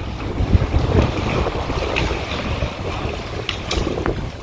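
Wind buffeting the microphone over small waves washing against shoreline rocks, with a few faint clicks near the middle and toward the end.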